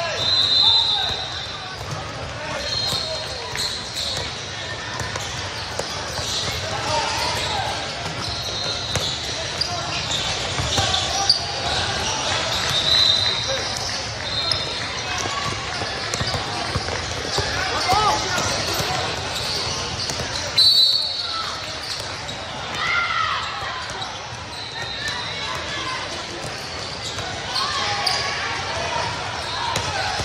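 Live basketball play on an indoor sport-tile court: a basketball bouncing as it is dribbled, short high sneaker squeaks now and then, and indistinct calling from players and spectators.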